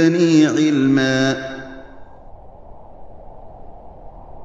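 A voice chanting a short, drawn-out phrase with echo that rings away about a second and a half in. A low, steady rushing noise follows.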